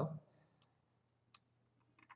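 Two faint, short computer-mouse clicks about three quarters of a second apart, in near silence.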